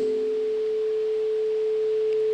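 Microphone feedback through a public-address system: a single steady, pure ringing tone at a mid pitch.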